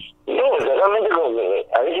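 Speech only: a person talking with the thin, narrow sound of a telephone line.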